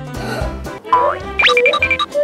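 Light background music for children, then, past halfway, a cartoon sound effect: a fast rising whistle-like glide followed by a quick run of short high beeps.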